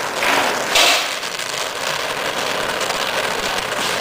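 Oxy-fuel gas torch flame hissing steadily as it heats a dented steel two-stroke expansion chamber, with two louder rushes in the first second.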